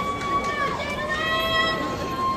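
A high voice singing a melody of long held notes that slide up and down between pitches.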